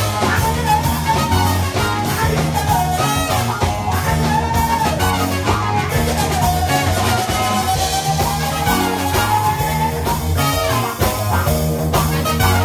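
A live band playing an upbeat song: a lead singer over electric guitar, bass guitar and drum kit, with saxophone and trumpet in the line-up. Long held, wavering notes sit above a steady beat.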